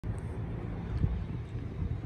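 Low, steady rumble of wind on the microphone, with outdoor background noise.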